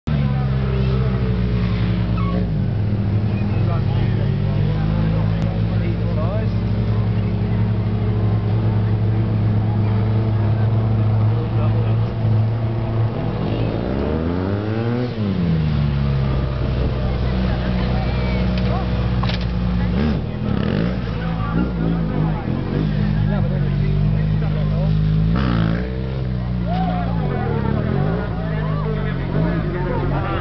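Stunt motorcycle engine running steadily, revving up and back down about halfway through, with several shorter revs in the last third.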